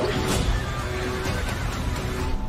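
Film trailer music mixed with sound effects, over a heavy low rumble.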